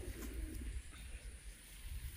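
A dove cooing once in the first second, low and soft.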